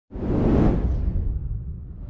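Cinematic whoosh sound effect with a deep rumble underneath. It starts suddenly just after the beginning, swells within half a second and fades over the next second or so.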